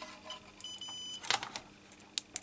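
Digital multimeter giving a single short high-pitched beep of about half a second, followed shortly by a sharp click of the probes.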